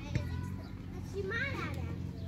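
Young children's voices at play, with one child's high voice rising and falling briefly about a second and a half in.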